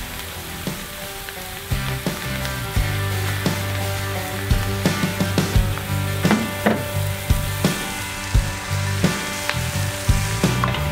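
Sliced beef, onions and peppers sizzling in butter on a steel fire disk, with a wooden spoon stirring and scraping the pan, giving sharp clicks now and then over the steady sizzle.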